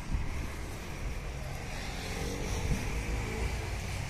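A motor vehicle engine running at a distance, growing slightly louder through the middle, over a low outdoor rumble.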